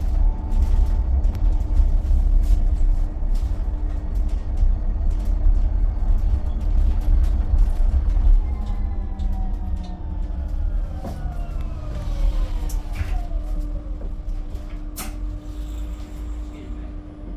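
Cabin of a moving Alexander Dennis Enviro200 EV battery-electric bus: low road rumble and a steady hum, with light rattles. From about halfway the electric drive whine falls in pitch as the bus slows, and there is a sharp click near the end.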